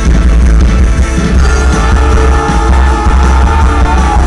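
A live rock band playing loud: electric guitar and drums over a very heavy low bass, continuous and dense throughout.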